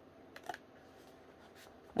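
Faint paper handling: a print being pressed and smoothed onto a cardboard backing, with a couple of soft rustles about half a second in and again near the end.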